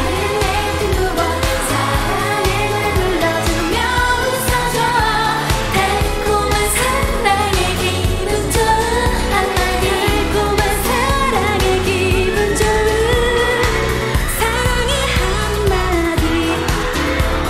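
K-pop girl group singing a bright pop song live into handheld microphones over a backing track with a steady beat.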